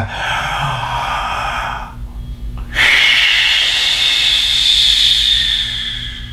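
A man taking a slow, deep breath in for about two seconds, then, after a short pause, a longer and louder breath out lasting about three seconds, as a demonstration of deep breathing.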